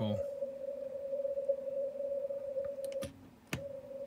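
Yaesu FTdx5000MP receiver audio on the 17 m CW band: a steady tone near 600 Hz over faint hiss, with no audible Morse keying. About three seconds in, the tone cuts out for half a second between two sharp clicks, as the operator switches antennas.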